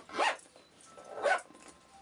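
Zipper on a plaid fabric handbag pulled twice: two short rasps about a second apart.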